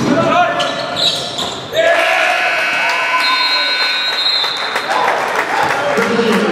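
Gym scoreboard horn sounding one steady blast of about two and a half seconds, starting about two seconds in, signalling a stoppage in a basketball game. Before it, a basketball bounces on the hardwood floor amid players' voices.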